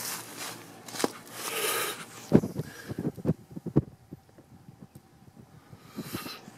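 Footsteps and camera-handling noise: a few rustles, a sharp knock about two seconds in, then a run of light knocks, quieter near the end.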